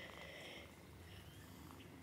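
Ginger Persian kitten purring faintly while being held.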